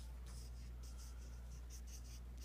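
Black felt-tip marker drawing a quick run of short strokes across paper, faint scratchy scrapes about four or five a second, over a steady low hum.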